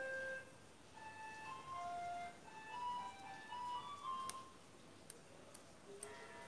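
Background music: a slow, simple melody of single clear notes, one after another. A few short clicks come in the second half.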